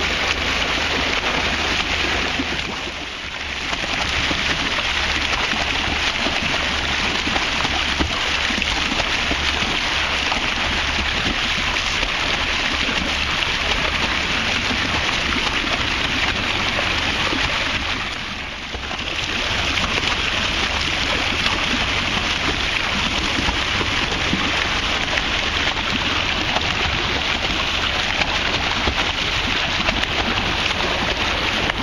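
Steady rushing hiss of sea water and wind heard from a moving boat. It dips briefly twice, about three seconds in and again past the middle.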